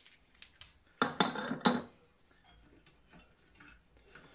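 Small machined steel counterweight pieces clinking against each other and against a model steam engine's crankshaft as they are handled and fitted by hand: a few light clicks, then a busier run of metallic clinks about a second in, with faint ticks after.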